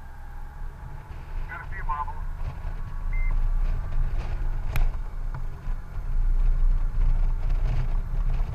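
Honda Gold Wing GL1800 motorcycle riding along a winding road: a steady low engine and wind rumble that grows louder about three seconds in and again near six seconds. A single sharp click comes just before five seconds.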